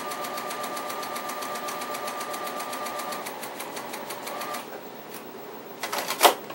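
Straight-stitch sewing machine sewing a seam through cotton quilt patches: a rapid, even run of stitches with a steady motor whine, stopping about four and a half seconds in. A few separate clicks follow near the end.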